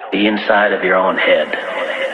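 A voice sample in a progressive house / melodic techno mix, sounding thin and narrow like a voice over a radio. About a second in, the full-range music opens up beneath it.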